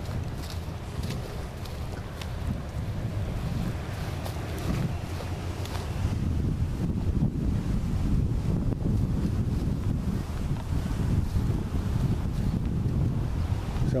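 Wind blowing across the microphone: a low, fluctuating rumble that grows somewhat stronger about halfway through, with a few faint ticks.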